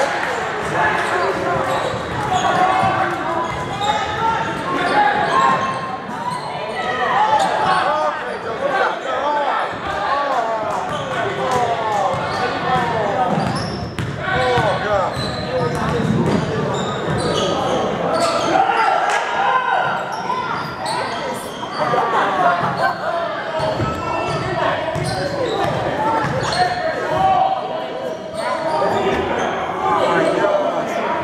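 Basketball game in a gym: a ball bouncing on the hardwood court and sharp knocks of play, under many overlapping voices of players and spectators calling out, all echoing in the large hall.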